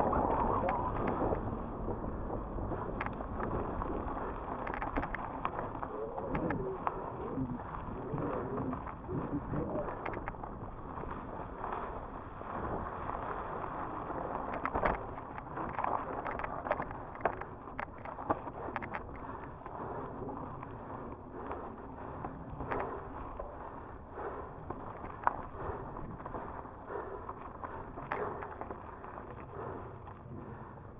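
Mountain bike ridden fast down a dirt singletrack: tyres running over dirt and rock, with frequent sharp clicks and knocks as the bike rattles over bumps.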